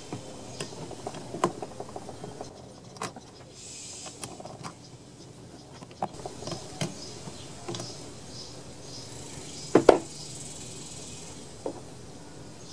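An 8 mm nut driver and hands working the nuts and plastic parts off a chainsaw's carburetor area: scattered light clicks and ticks of metal on plastic, with a louder double knock near the end.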